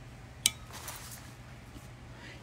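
A single sharp click of a disposable lighter about half a second in, then a faint brief hiss as a hand-rolled cigarette is lit and drawn on.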